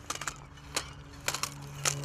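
A handful of sharp, irregular clicks from a fixed-spool fishing reel being handled while a hooked fish is played, over a faint steady low hum.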